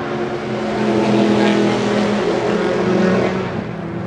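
Race car engines running on the circuit, growing louder about a second in and slowly fading.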